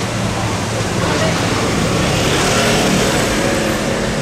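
Street traffic: car engines running at low speed, with a vehicle passing close so the noise swells about two seconds in and falls off near the end.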